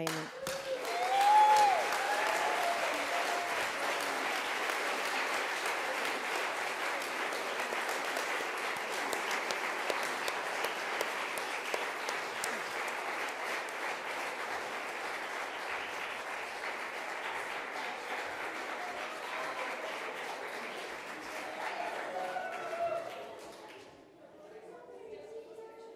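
A roomful of people applauding, steady for about twenty seconds, with a single voice calling out briefly near the start. The clapping dies away near the end among a few voices.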